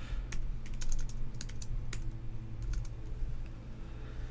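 Typing on a computer keyboard: irregular keystrokes in short runs with pauses between them, over a low steady hum.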